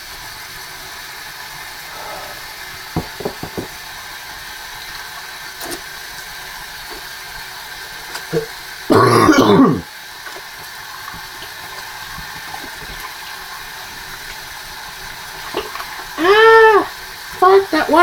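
A man coughs once, hard, about halfway through, over a steady background hiss, with a few faint clicks earlier. Near the end he lets out a short voiced sound.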